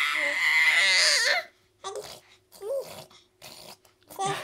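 An infant's loud, high-pitched vocal sound, held until about a second and a half in, where it breaks off. A few short, quieter vocal sounds follow.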